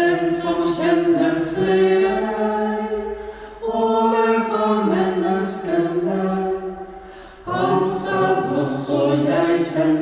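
Small unaccompanied choir of Dominican sisters and brothers chanting the Divine Office in Norwegian, with long sustained notes. It sings three phrases, starting at once, about four seconds in and about seven and a half seconds in, each with a short reverberant fade between.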